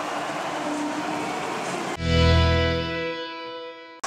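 Ice hockey arena crowd noise for about two seconds, cut off halfway by a short music stinger in the highlight edit: a held chord that starts suddenly and fades away.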